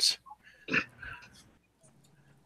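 A few brief, soft laughs and breaths over a video call, two or three short ones in the first second and a half, then quiet.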